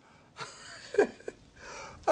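A man's breathing between sentences: a breathy exhale, a short voiced huff with a falling pitch about a second in, then an inhale near the end.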